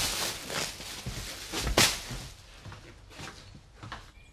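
Black plastic bin bag rustling and crinkling as it is handed over and handled, with a single thump a little under two seconds in.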